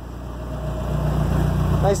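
Turbocharged 2.2-litre four-cylinder engine of a 1987 Dodge Shelby Charger idling steadily, a low even hum that grows a little louder over the two seconds.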